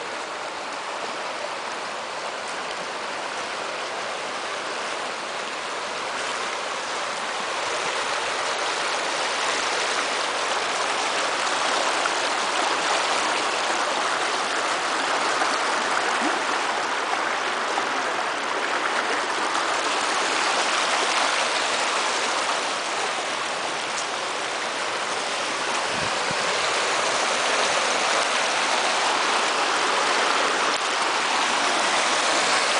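Small brook running over rocks and riffles: a steady rushing of water that grows louder over the first several seconds, then holds.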